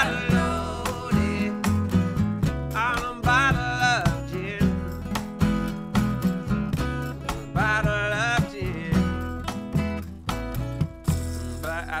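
Live acoustic blues-rock: an upright bass and a strummed acoustic guitar keep a steady groove, while several voices sing together in harmony in drawn-out phrases near the start, at about three seconds and at about eight seconds.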